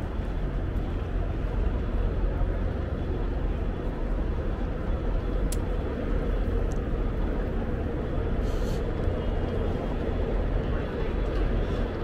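Busy city street ambience: a steady rumble of traffic, with a brief hiss about eight and a half seconds in and indistinct voices of passers-by.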